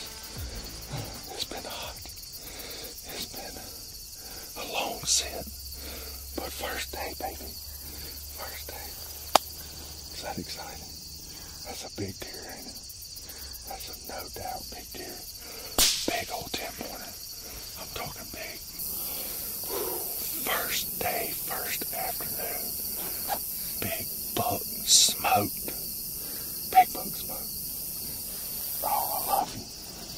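Crickets chirping in a steady high-pitched background chorus that grows louder about two-thirds of the way through, with low voices and a few sharp clicks.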